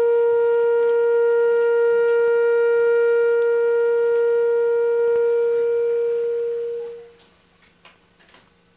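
A single long note held on a clarinet, steady in pitch, fading out about seven seconds in.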